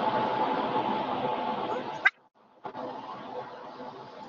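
Background noise with a faint steady hum coming through participants' open microphones on a video call. About two seconds in there is a sharp click and a brief dropout, and the noise then comes back quieter.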